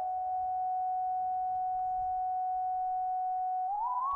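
PlantWave 'Signal' sound set: a single synthesized sine-wave tone sonifying the plant's electrical signal. It holds one steady note, which means the plant's wave is barely changing, then glides up to a higher note near the end.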